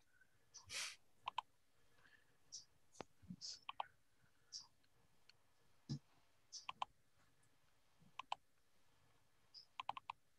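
Faint computer mouse clicks, many in quick pairs, scattered through, while a slide is being brought up to share on screen. A brief soft rustle comes about a second in.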